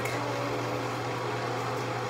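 Steady low electrical hum from a room fixture that runs whenever the light is switched on.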